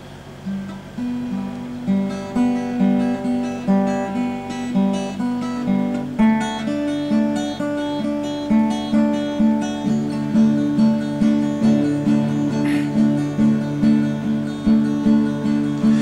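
Acoustic guitar playing the instrumental intro of a country song, a steady pattern of picked and strummed chords with a change of chord about six seconds in.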